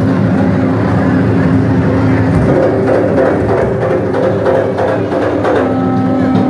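Live Garifuna hand drums played in a dense rhythm, with sustained voices singing over them.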